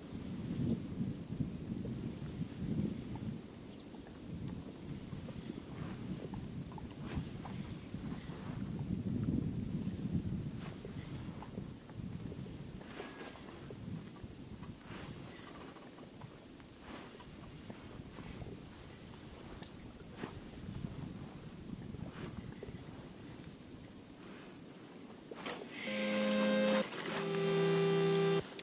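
Wind buffeting the microphone in uneven gusts, with faint scattered clicks from handling the spinning rod and reel. Near the end, background music with held notes comes in and is the loudest sound.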